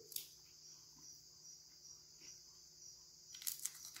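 Crickets chirping steadily in the background. About three and a half seconds in, a few crisp crunches as a dry, crunchy polvilho peta biscuit is bitten and chewed.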